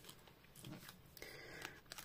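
Faint crinkling of a foil Pokémon booster pack wrapper as it is picked up and handled: a few soft rustles, over near silence.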